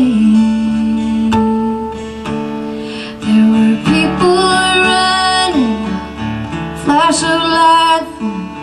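Live folk song: acoustic guitar playing under a woman's voice, which holds long, wordless notes that slide in pitch.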